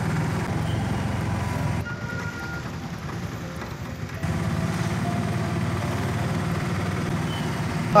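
Engine and road noise heard from inside a moving vehicle, a steady low drone. It turns quieter and duller for about two seconds starting near the two-second mark, then returns.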